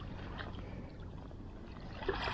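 Small waves lapping and sloshing close to the microphone at water level, over a low steady rumble, with a few faint ticks of water.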